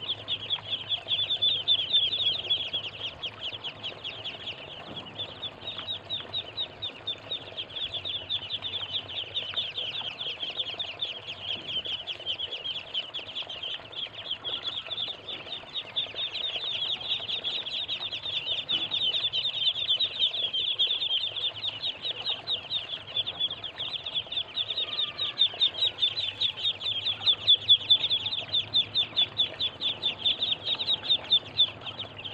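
A flock of Muscovy ducklings peeping nonstop, a dense chatter of short high calls that grows louder near the end.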